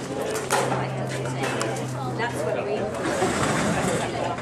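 People talking in the background, with a steady low hum underneath that stops about three seconds in.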